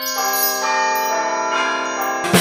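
Bell-like chime music: ringing notes come in one after another and hold together as a chord.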